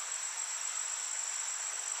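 Steady, high-pitched chirring of crickets as a continuous ambience.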